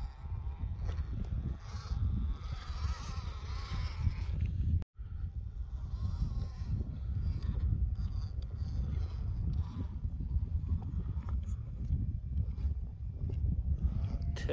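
Wind rumbling on the microphone, with the faint whine of an RC rock crawler's electric motor and drivetrain as it crawls up out of a dirt hole. The sound drops out briefly about five seconds in.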